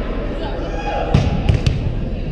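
A ball bouncing on a hardwood gym floor, three quick thumps from about a second in, echoing in a large gym over players' voices.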